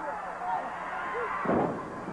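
A single heavy thud of a wrestler's body hitting the ring canvas after a top-rope attack, about one and a half seconds in, over steady crowd noise.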